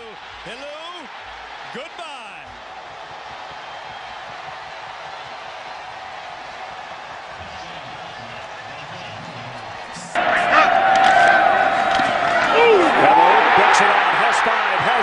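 Stadium crowd noise under a TV football broadcast, steady through the run, then abruptly much louder about ten seconds in as the footage cuts to another game's crowd. A few words from the play-by-play announcer come at the start, and more voices are heard near the end.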